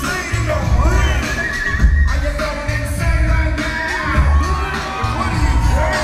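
Live hip-hop music from a concert: a heavy bass beat with high sliding, whining tones over it.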